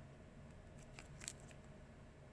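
Faint handling noise of a cardboard trading card being turned over between the fingers: a few short, soft clicks and rustles about a second in, over a low background hum.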